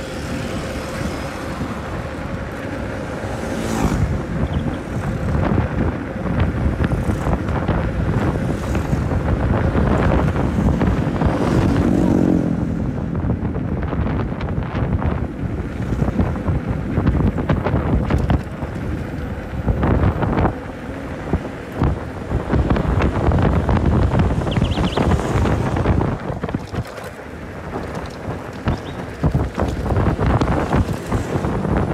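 Wind buffeting the microphone of a camera carried on a moving bicycle, a heavy fluctuating rumble, with motor traffic on the road; one vehicle passes with falling pitch about twelve seconds in.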